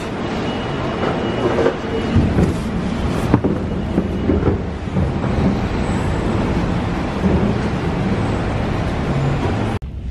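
Busy city street noise heard while walking: a loud, steady rumble of traffic with faint passing voices mixed in, cutting off suddenly near the end.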